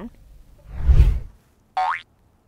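Editing sound effects: a whoosh swelling into a low boom about a second in, then a short rising cartoon 'boing' glide just before the end.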